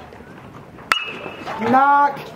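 A metal baseball bat hits a pitched ball about a second in: one sharp crack with a short, high ring. Spectators start shouting right after.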